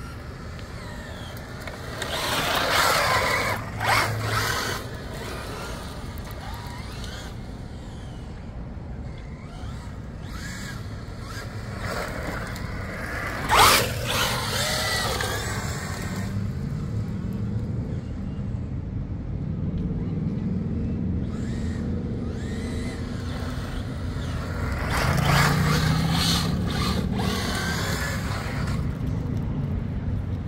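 Traxxas Ford Raptor-R RC truck's brushless electric motor whining up and down in pitch as it accelerates and slides on wet asphalt, with tyre hiss. It gets loudest when the truck passes close, about three seconds in, once sharply around fourteen seconds, and again near twenty-six seconds.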